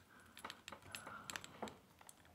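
Faint, irregular metallic clicks and scraping of a bobby pin being pushed into and worked in the keyhole of double-locked steel handcuffs, shifting the double-lock pin.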